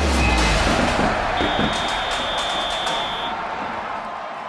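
Intro music with sound effects: a deep falling boom at the start under a dense noisy wash. A steady high tone is held from about a second and a half in to past three seconds.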